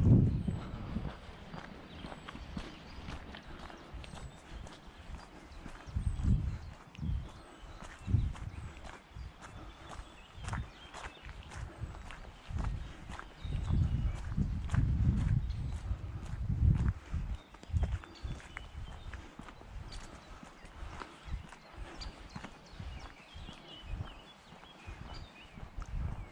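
Footsteps of a person walking at a steady pace on a wet, gritty road, a regular crunch of shoes. Gusts of wind buffet the microphone with low rumbles at the start, around six and eight seconds in, and for several seconds in the middle.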